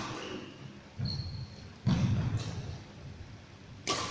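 A badminton racket strikes a shuttlecock with a sharp crack near the end. Before it come dull thuds of footsteps on a wooden court floor about one and two seconds in, with a brief high squeak of a shoe sole just after the first.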